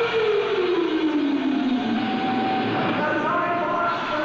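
Live hard rock band playing: one long held note slides smoothly down about an octave over roughly two seconds, and other held notes come in near the end.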